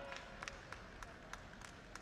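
A few scattered, faint hand claps: sharp irregular claps several times a second over the low hum of a large hall.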